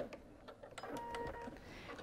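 Quiet handling at a sewing machine just after a seam is stitched: a few soft clicks, and a brief faint tone about a second in.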